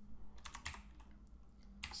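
A few scattered keystrokes on a computer keyboard, typing code: sharp clicks about half a second in and again near the end, over a faint steady low hum.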